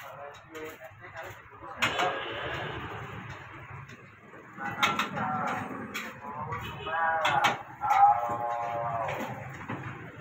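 Metal spatula clanking and scraping in a wok as fried rice is stir-fried, with a sudden sizzle about two seconds in that fades over the next couple of seconds. People talk over it, loudest near the end.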